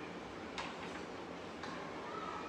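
Hands handling a plate of food on a table: a few light clicks, the first about half a second in and another near the end, over a steady background hiss.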